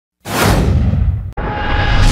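Intro sound effect: a loud whoosh with a deep rumble under it. It starts about a quarter second in, breaks off briefly near the end and starts again.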